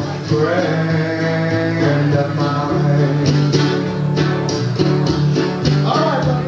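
Live blues song: a man singing over his own strummed guitar, the strokes falling in a steady rhythm.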